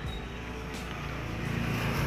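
A motor vehicle running nearby, a steady engine hum that slowly grows louder.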